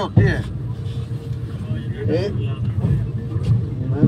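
Steady low rumble of a passenger train carriage, with short bursts of men's voices over it.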